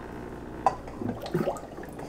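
Aquarium water bubbling gently from an air-pump-fed bubbler ornament, low and steady, with a faint click about two-thirds of a second in.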